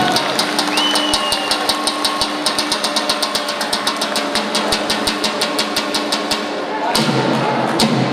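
Tupan drum opening a folk dance tune: a fast, even beat of light clicks over a held low tone. About seven seconds in, a heavier, fuller drum part comes in.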